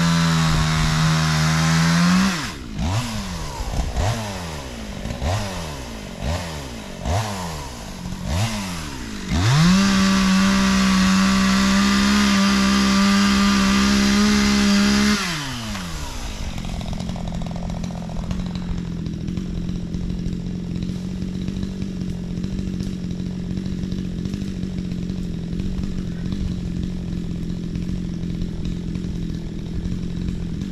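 Two-stroke chainsaw cutting at the base of a tree trunk. It runs at full throttle for about two seconds, is blipped up and down about six times, then holds full throttle again for about six seconds. Past the middle it drops to a steady idle.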